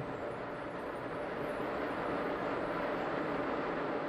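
Steady rushing hiss from a Falcon Heavy on the launch pad venting liquid-oxygen boil-off during the final countdown.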